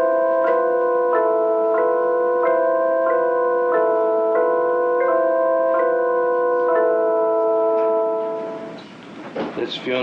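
Electronic keyboard playing a slow, simple series of held chords, a new chord about every two-thirds of a second, played by a young child; the music fades out about eight and a half seconds in and a voice starts just before the end.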